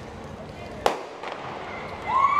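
A starter's pistol fires once, about a second in, sending sprinters off in a 100 m race.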